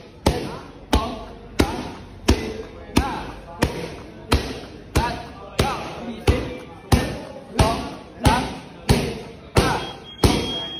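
Kicks landing on Thai pads held by a trainer: sharp slaps in a steady rhythm of about three every two seconds, around fifteen strikes, with a short vocal sound after many of them.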